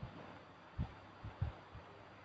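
Several soft, low thumps in quick succession, two louder than the rest: a smartphone being handled and tapped in the hand.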